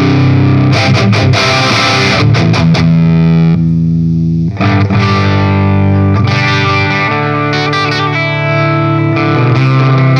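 Distorted electric guitar chords played through a Marshall 1959HW Super Lead Plexi head running cranked. The sound dips briefly just before halfway and then comes back with less top end, as the amp goes over to its second, lower-volume channel.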